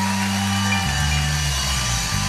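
Live gospel band playing steady held chords with no singing; the harmony shifts a little under a second in.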